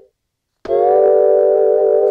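A held synth note played from a Maschine+ sampler pad stops suddenly. After about half a second of silence the same sustained tone starts again and holds, now through the sampler's MP60 engine mode, which adds a little noise and lo-fi grit.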